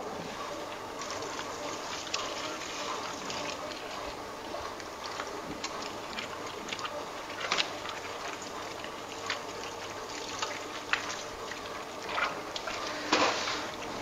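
Spiral dough mixer running steadily while water is poured in a thin stream into the dough in its bowl, with a few short knocks here and there.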